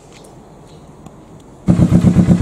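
Kawasaki Vulcan S parallel-twin engine with an aftermarket exhaust starting near the end, going from quiet to a loud, even, fast pulsing run. It fires and keeps running with a newly fitted BoosterPlug fuel-mixture module.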